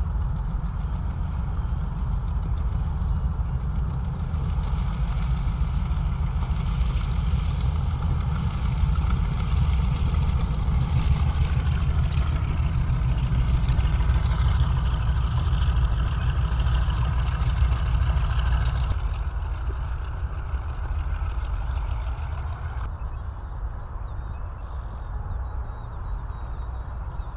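Twin radial engines of B-25 Mitchell bombers running at taxi power: a deep, steady rumble with propeller noise. It grows louder through the middle as an aircraft passes close, then eases off after about 19 seconds.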